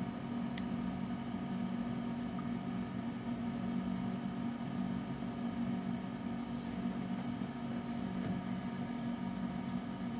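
Steady low mechanical hum with a couple of faint clicks.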